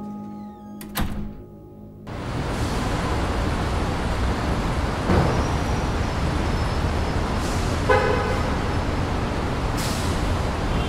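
A dramatic held music note ends with a sharp hit about a second in. About two seconds in, loud city traffic noise starts suddenly and runs steadily, with a whoosh of a passing vehicle near the middle and a short car horn toot near the end.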